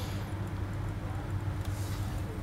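Steady low hum with a faint hiss: room tone.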